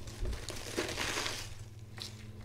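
Crisp iceberg lettuce crunching as a whole head is bitten into and chewed, dying away toward the end.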